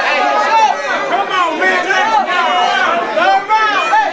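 A crowd of men shouting and talking over one another, many loud overlapping voices at once.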